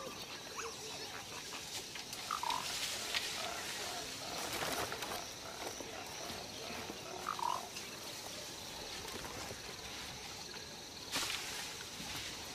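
Forest ambience: a steady high hum of insects, with scattered animal calls, two of them clearer about two and a half and seven and a half seconds in.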